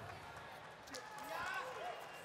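Faint arena background noise, with distant voices calling out faintly from about a second in.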